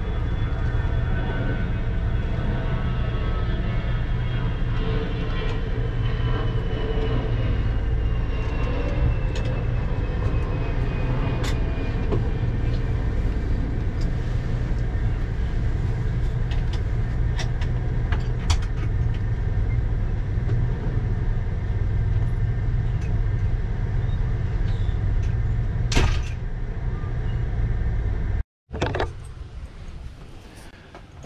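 Motorhome engine and road noise heard inside the cab while driving: a steady low rumble with scattered light rattling clicks. It cuts off abruptly near the end.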